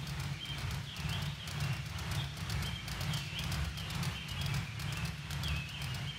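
Ceiling fan running, with a rhythmic knocking a few times a second over a low hum, and a short high chirp recurring about once a second.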